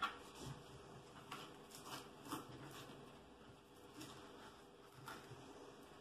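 Kitchen knife chopping fresh herbs on a plastic cutting board: faint, irregular taps of the blade, several in the first couple of seconds, then sparser.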